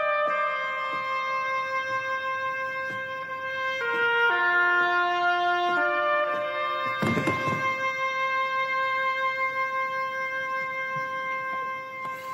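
Background drama score of slow, held brass and wind notes moving through chords every second or two. A brief low noisy thud cuts in about seven seconds in.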